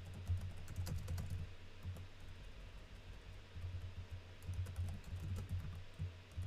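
Typing on a computer keyboard: quick runs of keystrokes, thickest in the first second and a half and again over the last couple of seconds, with a few scattered keys in between.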